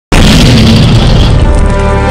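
Production-logo sting: a loud cinematic boom hit over music, starting abruptly, its bright top end dying away over about a second and a half while the deep low end holds.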